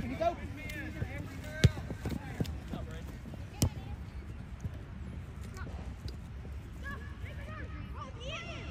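A soccer ball kicked twice: two sharp thuds about two seconds apart, the first the louder.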